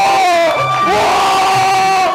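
A man yelling in excitement, long held shouts of triumph, over background music with a steady low beat.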